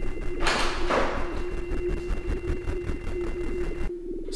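Dark, droning synthesizer score: a steady low hum under a rapid, even pulse, with a rushing swell about half a second in that fades away. It cuts off suddenly just before the end.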